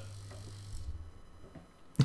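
Quiet pause: faint room tone with a low hum that fades out about a second in.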